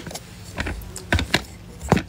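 Handling noise from a phone held close to its microphone: a few short, sharp knocks and clicks, the loudest near the end as the phone is moved.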